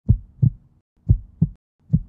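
Heartbeat sound effect: pairs of low thumps in a lub-dub rhythm, about one beat a second, with silence between the beats.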